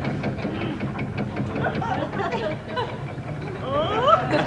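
A steady, low engine hum with a quick ticking, and indistinct voices in the background from about halfway through.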